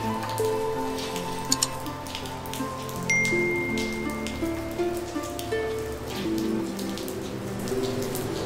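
Rain falling on a tiled courtyard, with scattered drops ticking, under slow background music of held notes that change every second or so.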